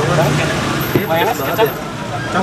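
Indistinct voices talking over steady roadside traffic noise.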